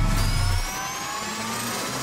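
Intro logo sound effect: several synthesized tones rise steadily in pitch together, over a low rumble that fades out in the first half-second.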